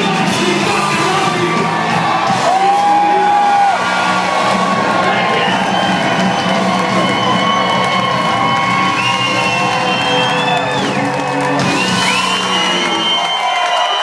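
Live rock band playing loud, with electric guitars, drums and a singer, heard from the audience, with whoops and shouts from the crowd. Sustained guitar notes and pitch bends run through the second half.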